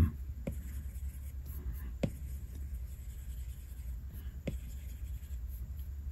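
Apple Pencil tip rubbing faintly across an iPad Pro's glass screen in painting strokes, with three sharp taps about two seconds apart, over a low steady hum.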